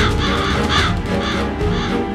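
Crow cawing about four times, harsh calls roughly half a second apart, over a film score of sustained low notes.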